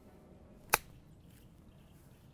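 Golf iron striking a ball on a short pitch shot: one sharp click about three-quarters of a second in.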